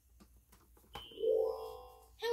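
VTech Touch & Teach Elephant toy book: two light plastic clicks as a page is turned, then the toy plays a short electronic chime that starts about a second in and fades out.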